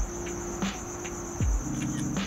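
Crickets trilling steadily at a high pitch, under a low held tone that thickens into a sustained chord near the end. A short deep thud sounds about three-quarters of the way through.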